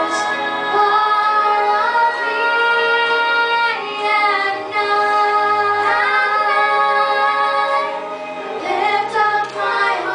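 A teenage girl and a young boy singing a duet together into microphones, holding long sustained notes that step to new pitches between phrases.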